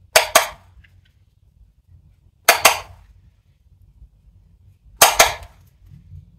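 Sharp hard taps in three quick groups of two or three, about two and a half seconds apart: a makeup brush knocked against a powder container.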